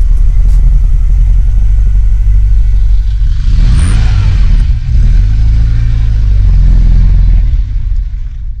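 Ferrari convertible's engine running with a loud, low, steady note, revving up and back down about halfway through, then starting to fade near the end as the car pulls away.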